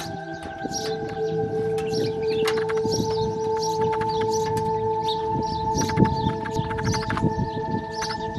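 Birds chirping over and over, about twice a second, over steady held droning tones, with small clicks and knocks as a butane canister is fitted and the portable gas stove's lever and knob are worked.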